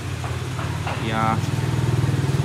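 An engine running with a fast, even low pulse, growing louder from about a second in. A brief voice is heard over it.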